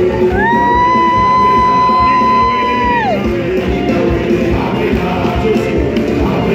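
Loud live church music with singing and crowd voices, recorded from within the crowd in a large hall. A long high note, gliding up at its start, is held for nearly three seconds over the music, then drops away.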